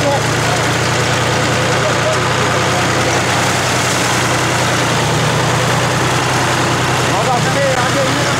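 A vehicle engine running steadily with a deep, even hum, heard from on board the moving vehicle.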